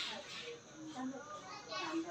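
Indistinct children's voices talking in short, broken snatches.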